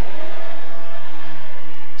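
Church music holding a steady chord, with a congregation's shouted praise under it.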